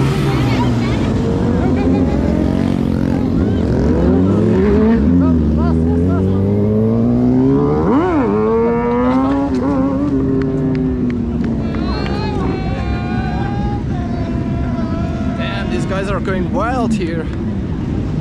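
Motorcycle engines revving and riding past, their pitch rising and falling over and over; one passes close about eight seconds in, with a quick rise and drop in pitch.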